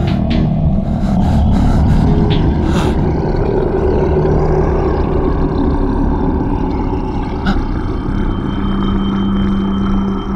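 Dark background score: a steady low rumbling drone with held low notes. A new sustained low note comes in near the end.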